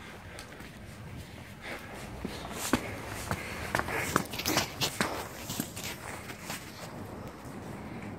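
Footsteps on brick paving: an uneven run of scuffs and light taps, busiest in the middle seconds.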